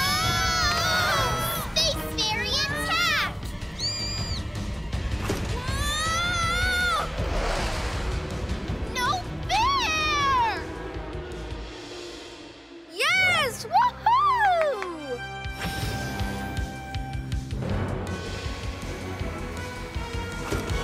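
Cartoon soundtrack: action background music under short shouted cries and screams from child-voiced characters, loudest about 13 to 15 seconds in.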